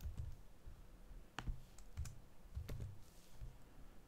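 A few faint, sharp clicks and soft knocks from a computer keyboard and mouse while code is being selected, copied and pasted.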